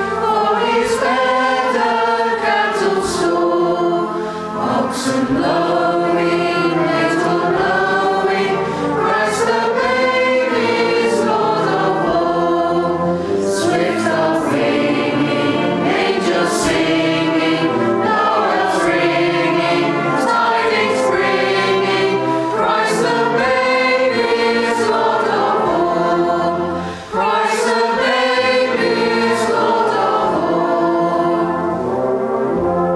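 A choir singing a carol in sustained chords that move from phrase to phrase, with brief breaths between phrases, about four seconds in and near the end.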